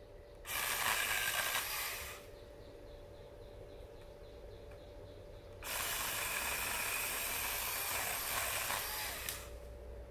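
Battery-powered chainsaw cutting pine branches in two bursts, a short one of under two seconds near the start and a longer one of nearly four seconds in the second half.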